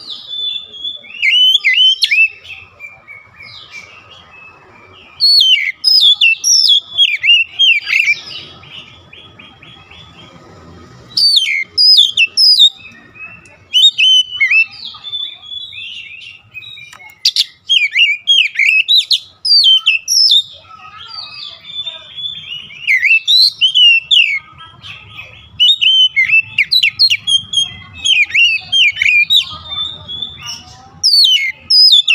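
Oriental magpie-robin singing: loud phrases of quick, sweeping whistles and chirps, broken by short pauses.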